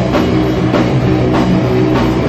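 A punk band playing live and loud: distorted electric guitars over a drum kit, with hard drum and cymbal hits about every 0.6 seconds.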